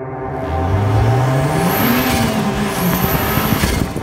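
Car engine revving sound effect: the engine note climbs for about a second and a half, then drops back, laid over a sustained music drone.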